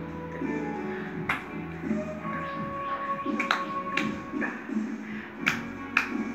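A young girl singing a song, with about four sharp hand claps along the way.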